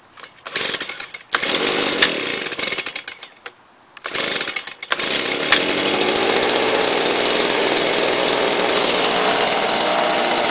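Stihl BG55 handheld leaf blower's two-stroke engine pull-started cold without priming. It fires about a second in and runs unevenly, then dies away around three and a half seconds. It catches again about four seconds in and settles into steady running.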